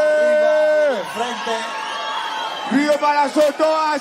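A man's voice over a PA, holding one long note that slides down in pitch about a second in, then a burst of crowd cheering and whoops, then the voice again near the end.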